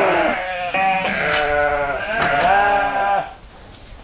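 Sheep bleating, several loud calls overlapping one another, dying away a little over three seconds in.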